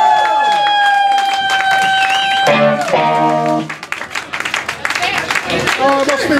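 Live beat band with fuzzy electric guitar holding one long ringing note, then a short final chord about two and a half seconds in. Scattered clapping and cheering from the audience follow.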